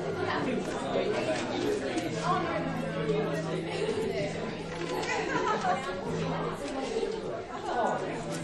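Many people chatting at once in a large room, overlapping conversations with no single voice standing out.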